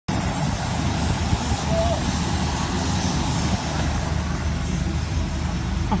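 Steady low rumble and roar of an airport apron, heard from inside a car moving close past a parked wide-body airliner, without a distinct engine whine. A short laugh comes right at the end.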